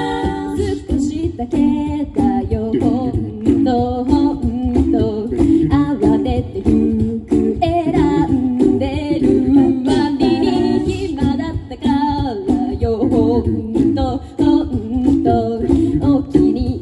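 Mixed-voice a cappella group singing through stage speakers, voices in harmony over steady beatboxed percussion.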